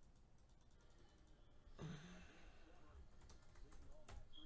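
Near silence: faint, rapid light clicks through the first half, and a brief low sound about two seconds in.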